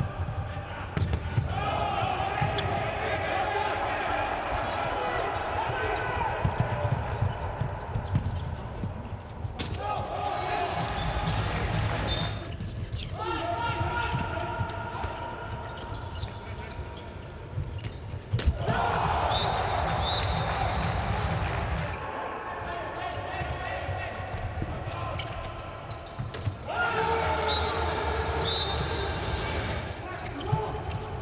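Live handball game sound: the ball bouncing on the court floor as players dribble and pass, with players' shouts. The sound changes abruptly several times where short clips are cut together.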